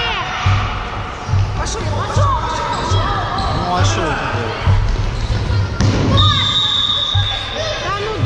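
Ball thuds on the hardwood floor of a sports hall during a youth futsal game, with children's shouting voices echoing in the hall. Near the end a referee's whistle sounds one long, steady blast lasting over a second, stopping play.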